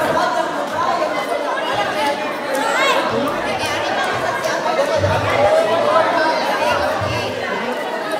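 Crowd chatter: many people talking and calling out over one another, with a brief high voice rising and falling about three seconds in.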